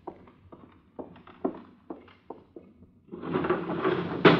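Radio-drama sound effects: footsteps crossing a room, about two or three a second, then a window being pushed open with a scraping slide lasting about a second and a half near the end.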